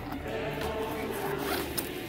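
Zipper of a fabric school backpack being pulled open.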